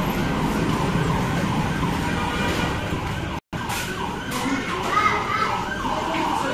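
Busy fast-food restaurant room noise: a steady wash of background sound with faint voices. The sound cuts out completely for a moment about halfway through.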